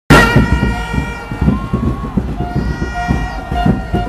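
A crowd of football fans blowing plastic stadium horns: several long, steady horn notes overlap while short toots repeat on top. Crowd noise and rhythmic low thumps run underneath.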